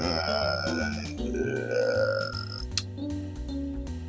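Cartoon orchestral score with comic sound effects as a rope is hauled taut: a low, belch-like strained sound and wavering tones, then a single sharp click about two-thirds of the way through, after which sustained music notes carry on.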